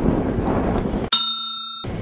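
Wind and rolling noise on a camcorder microphone. About a second in, this is cut off abruptly by a short, clear bell-like ringing tone lasting under a second, with all background sound gone, before the noise returns.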